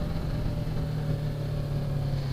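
A Yamaha R3's 321 cc two-cylinder engine running steadily while the motorcycle is ridden slowly, an even hum with no revving.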